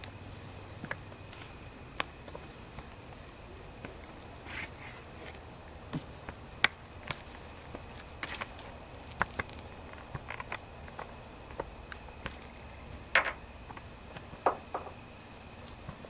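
Night insects chirping steadily in high, pulsing tones, with scattered light clicks and knocks of handling close by.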